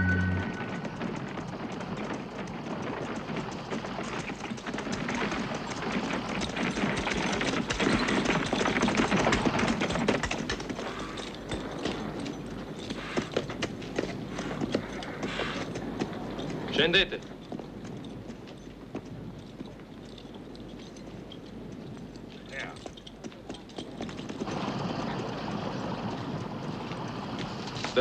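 Horse-drawn cart arriving: horses' hooves clopping and the cart rattling in a dense, uneven clatter, louder around the middle and again near the end, with a brief sharp louder sound just past halfway.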